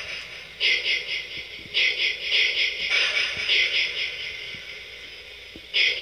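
A strange high, warbling electronic sound in uneven pulses that fades, swells again and cuts off suddenly at the end.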